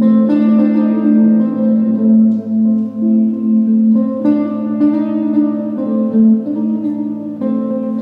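Electric archtop guitar played through an amplifier: chords and single notes struck every second or two and left to ring over a held low note.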